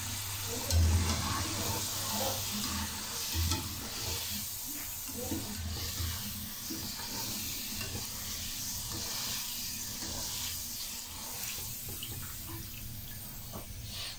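Potato fries sizzling steadily in hot ghee in a wok while a wire skimmer stirs and lifts them out half-fried, with a couple of low thumps in the first few seconds. The sizzle eases slightly toward the end.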